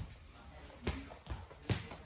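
Bare feet on foam grappling mats as a person gets up and walks: two soft footfalls, about a second in and near the end.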